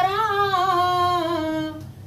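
A woman singing unaccompanied, holding one long, slightly wavering note at the end of a line that fades out just before the end.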